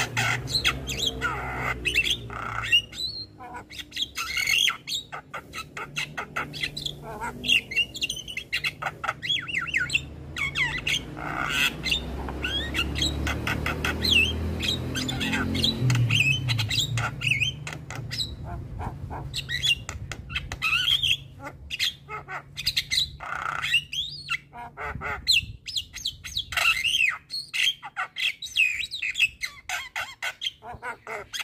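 Javan myna (jalak kebo) in full song: a rapid, unbroken run of harsh squawks, chatters and short whistled notes, with a steady low hum underneath for the first two-thirds.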